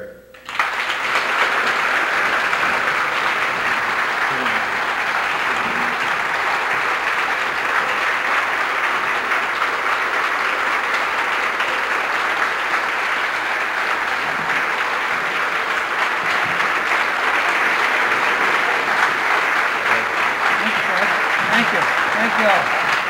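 Audience applauding, a dense steady clapping that starts about half a second in and keeps up at an even level throughout.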